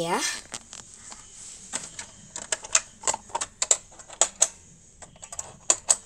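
Irregular light clicks and taps of plastic toy dollhouse parts being handled, coming in loose clusters with short gaps between them.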